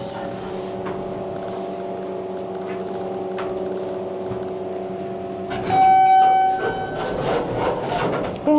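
Schindler 300A elevator car travelling with a steady hum; about six seconds in, a single loud electronic arrival tone sounds for about a second, followed by the noise of the car arriving and the doors opening.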